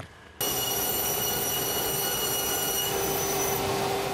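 Machinery running steadily with a high, multi-tone whine, starting suddenly about half a second in and fading out near the end.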